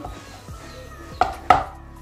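An aluminium cake pan full of batter tapped down twice, two sharp knocks about a third of a second apart, to settle the batter and knock out air bubbles.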